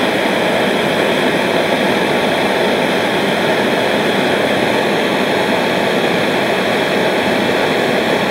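Hand-held gas torch burning with a steady, even hiss as its flame heats a copper cable lug until the lug is hot enough to melt the solder fed into it.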